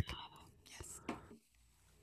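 Faint breathy, whispered voice sounds with a couple of soft clicks, fading to near silence about halfway through.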